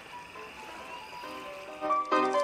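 Quiet background music of held notes that gathers more notes about halfway through and swells in level near the end.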